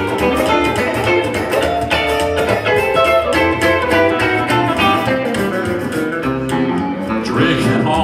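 Live country-blues playing: electric and acoustic guitars with a plucked upright bass, in an instrumental passage of quick picked notes.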